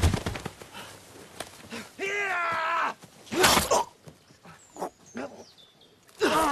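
A man's strained cries and grunts while fighting on the ground, beginning with a thud as he lands. One drawn-out straining cry comes about two seconds in, followed by a harsher burst of effort, then scuffling in dry leaves.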